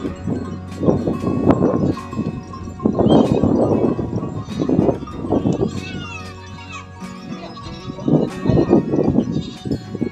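Goat neck bells of a large herd on the move, clinking and clanking steadily, with goats bleating several times over the bells.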